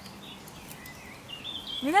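Quiet outdoor ambience with a few faint bird chirps, then a voice begins to speak near the end.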